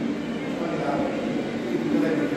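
Indistinct voices talking over steady background noise.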